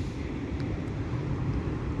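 Wind buffeting the camera's microphone: a steady, uneven low rumble.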